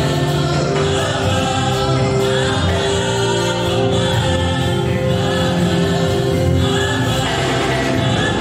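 Live gospel worship music: a worship team singing together as a choir, led by a male singer, over band accompaniment.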